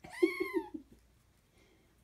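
Kitten squealing once during rough play-wrestling with a larger cat: a short, high cry that rises and falls, lasting under a second.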